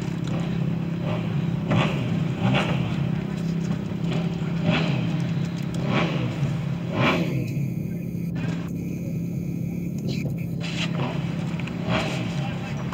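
An engine idling steadily, a low even hum, with faint voices now and then.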